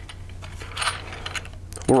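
A few light metallic clicks and clinks from a handheld digital pull-test scale and the half-inch steel test ball hanging from its hook, just after the ball has been pulled free of the plate magnet, over a low steady room hum.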